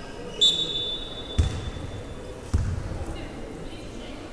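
A basketball bouncing twice on the gym floor, at about a second and a half and two and a half seconds in. Before the bounces, a sharp, high, steady tone starts about half a second in and trails off over the next two seconds.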